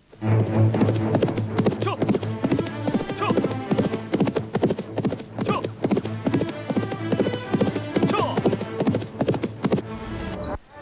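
A horse galloping, its hoofbeats a fast, continuous clatter that starts suddenly and runs on, with a few whinnies, over background music with a steady low drone.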